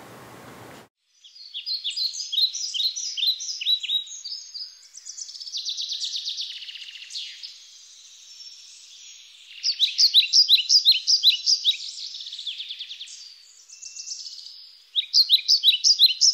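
Songbirds singing: quick series of repeated high chirping notes and trills, coming in phrases with brief pauses between them.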